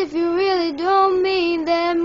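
A single high, young voice singing unaccompanied, holding sung notes that bend between pitches, with a short break for breath right at the start.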